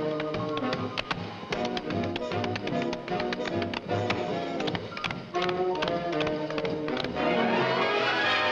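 Orchestral film music with sharp taps struck in time with it. Near the end the music swells into a louder, fuller orchestral passage.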